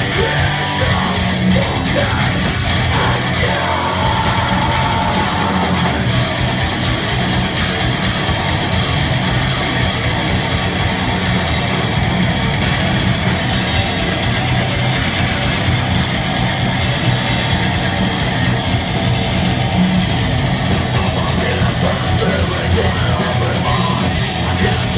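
A metal band playing live: distorted electric guitars, bass and drums, steady and loud, with the singer's harsh vocals over it.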